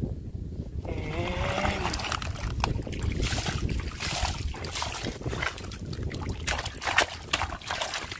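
Water splashing and sloshing as a plastic toy dump truck loaded with wet gravel is pushed through shallow water, with gravel and plastic clattering in many small clicks and a sharper knock about seven seconds in.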